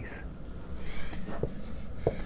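Dry-erase marker writing on a whiteboard in a few short strokes.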